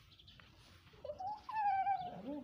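A newborn calf bleating: a short call about a second in, then a longer, high call that falls slightly in pitch.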